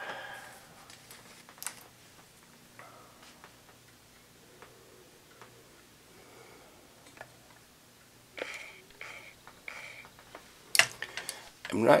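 Faint handling noise: scattered light clicks and a few short rustles, with a sharper click just before speech resumes, over a low steady hum.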